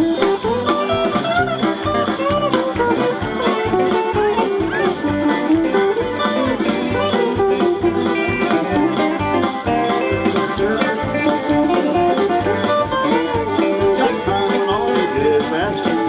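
Live country band playing an instrumental break: an electric guitar plays a lead solo with bending notes over bass guitar, acoustic guitar and a steady drum beat.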